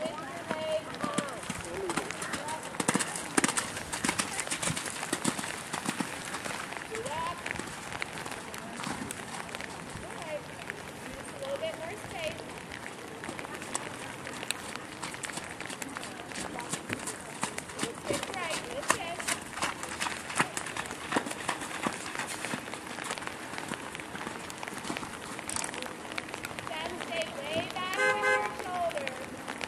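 Horse cantering a jumping course, its hoofbeats falling as a run of short thuds on the wet arena footing, over steady wind noise on the microphone.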